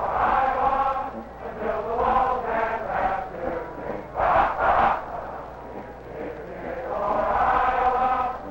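Many voices chanting together in unison, with two short, loud shouted syllables about four and a half seconds in.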